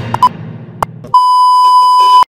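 Electronic beep from a channel outro: after the tail of the theme music and a sharp click, a loud, steady, high-pitched tone starts a little past halfway and holds, then cuts off abruptly.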